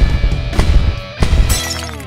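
Loud closing theme music: a stinger with three heavy drum hits about half a second apart, then a cymbal crash near the end as the final chord rings out and fades.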